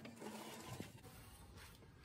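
Near silence, with a faint rustle in the first second that fades away.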